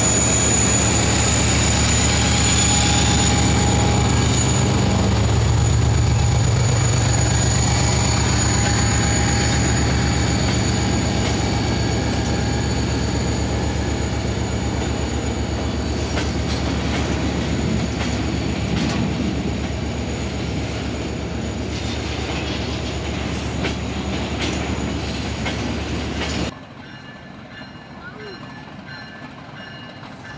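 Diesel freight train passing close by: a loud steady engine drone and the rumble of wagons rolling past, with a thin high wheel squeal in the first few seconds. About four seconds before the end the sound drops suddenly to a much quieter rumble.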